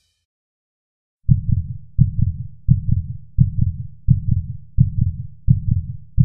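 Heartbeat sound effect: low double thumps (lub-dub) at a steady pace of about three beats every two seconds, starting about a second in.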